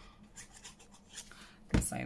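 Faint light scratching and paper handling as glue is run onto a chipboard tag from a plastic squeeze bottle. Near the end comes a single sharp knock as the bottle is set down on the cutting mat.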